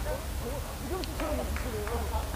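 A man laughing hard in a string of short calls that rise and fall in pitch, his laugh distinctive enough to be compared to another member's.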